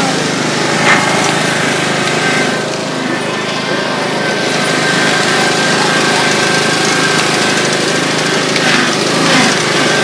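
Riding lawn mower's engine running steadily while the mower is driven along.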